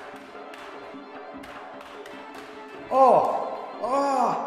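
Georgian dance music with a steady bed of sharp taps from steel swords clashing and feet striking the floor. About three seconds in, and again near the end, come two loud drawn-out vocal exclamations.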